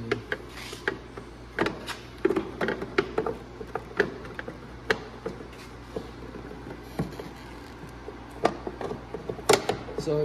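Scattered light clicks, taps and knocks at irregular intervals, from hands handling plastic and metal parts in a snowmobile's engine bay, over a faint steady low hum.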